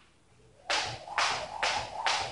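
A skipping rope whipping round in steady skips, one swish a little over twice a second, starting about two-thirds of a second in.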